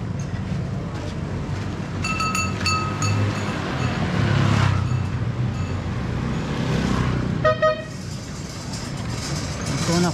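Steady rumble of a cycle rickshaw rolling along a street, with wind on the microphone. About two seconds in comes a quick run of high tooting beeps, and about seven and a half seconds in a vehicle horn honks twice, short and loud.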